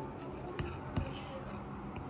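Two light knocks of a metal butter knife against the cookies while whipped cream is spread, over a low steady hum.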